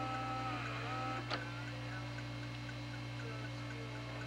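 Steady electrical hum, with a camcorder's tape mechanism starting playback: a faint whirring with wavering tones and a small click just over a second in.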